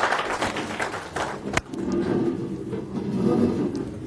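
Audience applause that dies away after a second and a half. Then a sharp knock and muffled rustling and rubbing as the presenter's clip-on microphone is handled against his clothing.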